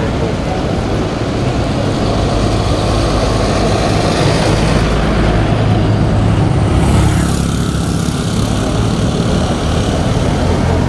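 Street traffic: vehicle engines running as cars and a bus drive past, with a low engine hum that swells toward the middle and eases off after about seven seconds.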